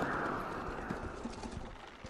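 Dense trailer sound-design noise with scattered clicks and knocks, fading away toward the end.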